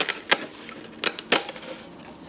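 A handful of sharp clicks and taps from hands handling a cardboard papercraft trailer as its roof lid is pulled open.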